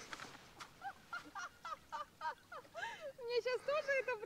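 Birds calling: many short, pitched calls in quick succession, the later ones lower and a little longer.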